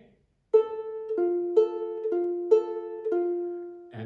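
Ukulele picked slowly over a held F chord, alternating between two single notes: the open A string and F on the E string. There are six ringing notes, starting about half a second in, higher note first.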